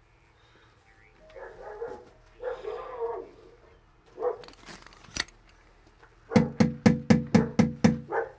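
A few knocks on the front door about halfway through, then a dog barking rapidly, about five barks a second, over the last couple of seconds.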